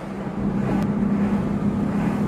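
A car's steady low hum, heard from inside the cabin.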